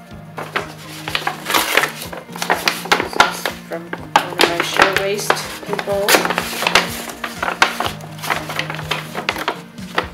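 Brown paper bag being handled, a dense run of sharp crackling rustles, with background music playing.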